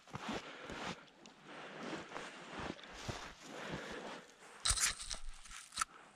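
Faint, irregular crunching and rustling of feet and gear on a bank of gravel and dry leaves. A brief louder rustle comes about five seconds in, and a sharp click just before the end.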